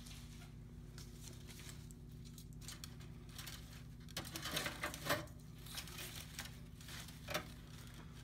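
Artificial leaf and flower stems rustling and crinkling as they are handled and tucked into a centerpiece arrangement. A louder cluster of crinkles comes about halfway through, and a single sharp click near the end.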